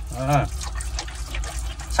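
Water running steadily from a hose pipe and splashing, with a brief voice near the start.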